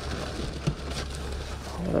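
Crinkling and rustling of a clear plastic bag and cardboard as hands rummage in a box, over a steady low rumble.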